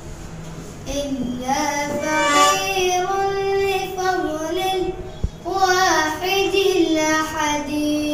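A boy singing a nasheed solo, holding long notes with melodic ornaments, with a short breath break about five seconds in.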